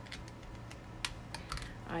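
A few light, sharp clicks and taps, about six in two seconds, from small craft supplies such as die sets being handled on a tabletop. A steady low hum runs underneath.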